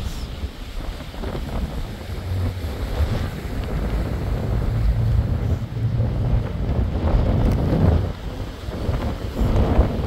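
Wind buffeting the microphone aboard a moving tour boat, rumbling and gusting, over the rush of lake water along the hull.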